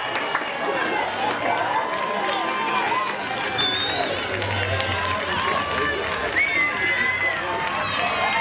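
Pitchside sound of a women's football match in play: many voices of players and spectators shouting and calling out, overlapping without pause.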